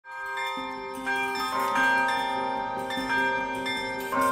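Several bells of different pitches struck one after another at irregular intervals, their notes overlapping and ringing on.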